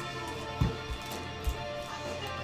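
Background guitar music, with two dull thumps about half a second and a second and a half in as plastic card cases are handled and set down on the table.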